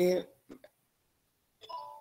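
A short electronic notification chime: several steady tones sound together for about a third of a second near the end, preceded by a couple of faint clicks.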